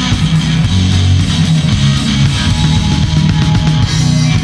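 Live rock band playing an instrumental passage: distorted electric guitars, bass guitar and drum kit, with no singing.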